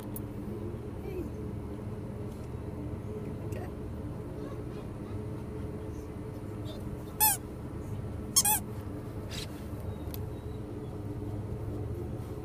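Steady low hum, broken by three short, high-pitched dog barks: one about seven seconds in and two in quick succession a second later.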